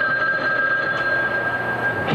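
A steady high tone, two notes held together, over crowd noise; it cuts off about two seconds in.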